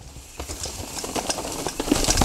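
Mountain bike rolling down a dirt trail covered in dry leaves: the tyres crunch and rustle through the leaves, with a scatter of clicks and rattles from the bike. It grows louder as the bike comes closer.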